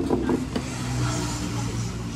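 Sparkling water poured from a plastic bottle into a glass, with a high fizzing hiss. A low steady engine hum runs underneath.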